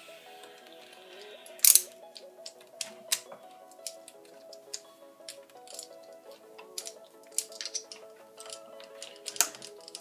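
Quiet background music under irregular sharp clicks and taps of pliers and a screwdriver on small hardware at an RC truck's plastic wheelie-bar mount. The loudest clatter comes just under two seconds in, and another near the end.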